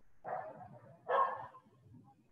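A dog barking twice, about a second apart, the second bark louder.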